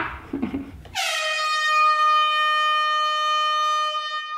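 A long, steady horn-like tone that comes in about a second in with a slight drop in pitch, then holds level with a bright, buzzy edge until the end, used as a sound effect. Brief laughter comes before it.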